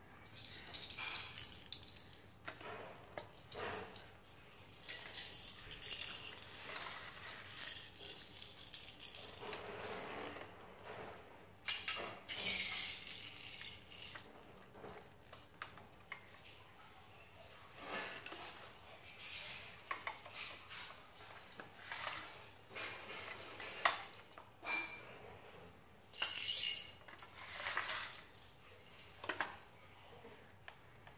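Hard plastic toy building pieces clicking and clattering as they are picked up off a tiled floor and pressed onto a stacked tower, in irregular bursts, loudest about twelve seconds in and again later.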